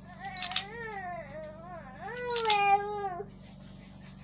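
A baby crying in two long wails of about a second and a half each, the second louder, with a steady low electrical hum beneath.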